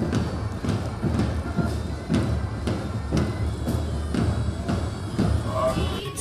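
Marching band drums beating in a steady march rhythm, about two strokes a second, over an outdoor rumble.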